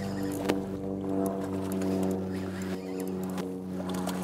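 Small outboard motor running steadily at idle, a low even hum, with a few light clicks of fishing reels.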